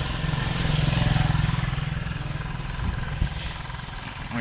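A motor vehicle passing on the road, its low engine and tyre rumble swelling about a second in and then fading, with a couple of light knocks a little before the end.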